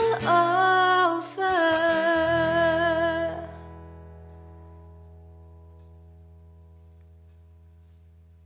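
A woman sings the song's final held note over acoustic guitar. The voice stops a little over three seconds in, and a last guitar chord rings on, slowly fading out.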